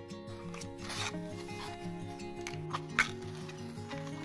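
A match being struck: a few short scraping rasps, then a sharp, much louder strike about three seconds in, over soft background music.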